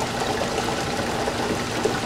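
Steady rush of water in a jet-impact test rig: a jet from a 5 mm nozzle hitting a 45-degree impact plate inside the cylinder and draining away at high flow, with the pump's faint steady hum underneath.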